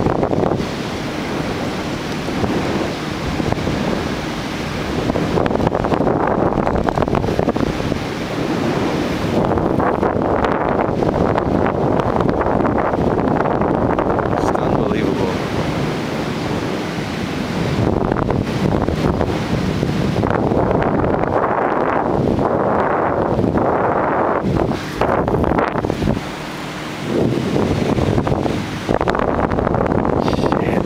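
Wind rushing over the camera's microphone in flight under a towed parasail: a loud, continuous rushing noise that swells and dips, dropping briefly a couple of times near the end.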